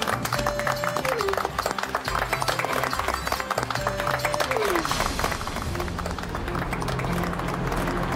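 A group of people clapping rapidly over background music, with two short sliding-down musical tones. From about halfway through, a steadier low drone of motor scooters running joins in.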